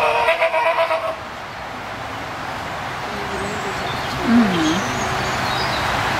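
Spectacled bear giving a loud, bleat-like cry during a squabble with another bear, which breaks off about a second in. A steady background hiss follows, with a short wavering call about four seconds in.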